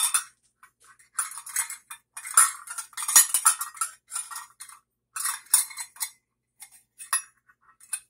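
Stainless-steel nested measuring cups clinking and rattling against each other as they are handled, in several short bursts of metallic clatter with a few single clicks in between.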